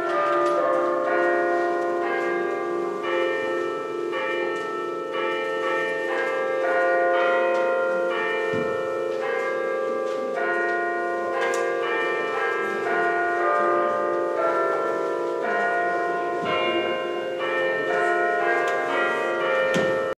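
Church bells ringing, one strike after another, each tone ringing on under the next.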